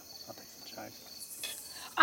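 Crickets chirping steadily, with faint voices underneath.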